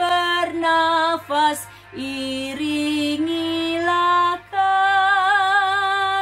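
A woman singing a hymn solo, holding long notes with vibrato, with brief breaths between phrases about two and four and a half seconds in.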